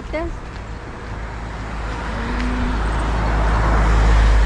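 Traffic on the adjacent road: a motor vehicle approaching, its engine rumble and tyre noise growing steadily louder over the last three seconds.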